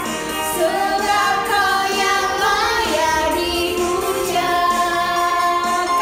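Children and a woman singing an Indonesian praise song with held, drawn-out notes over backing music.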